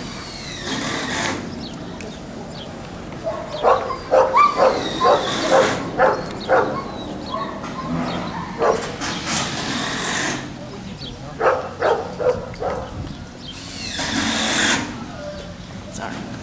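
Dogs barking in quick runs of short barks, one run about four to seven seconds in and another about eleven to thirteen seconds in, with a few swells of rushing noise in between.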